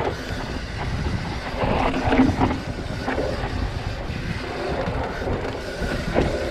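Full-suspension mountain bike riding down a dry dirt singletrack: a steady rumble of knobby tyres over the dirt, with irregular rattling from the bike over bumps.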